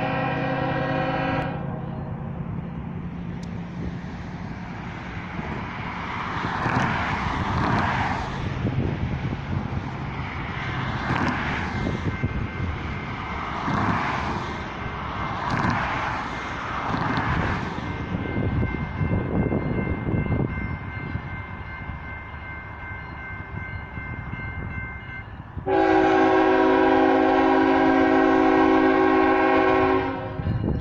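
Norfolk Southern freight locomotive's multi-chime horn sounding for a grade crossing. A blast ends shortly after the start, then comes a stretch of rumbling traffic-like noise with a steady high ringing tone. A loud, long blast starts suddenly near the end as the train nears the crossing.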